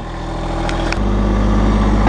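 Massey Ferguson GC1725M sub-compact tractor's diesel engine running steadily. About a second in, its note changes and grows louder, as the engine takes on more throttle or loader hydraulic load.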